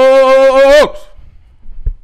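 A man's loud, drawn-out shout of the word "dog" into a handheld microphone, held on one steady pitch and cut off just under a second in. A short low thump follows near the end.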